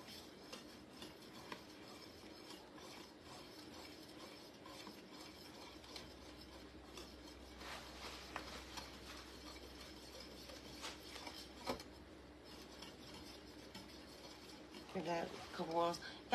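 A utensil stirring a thick, sticky fudge mixture of melting marshmallows and chocolate chips in an enamelled pot, giving faint, steady scraping and rubbing with occasional light clicks against the pot.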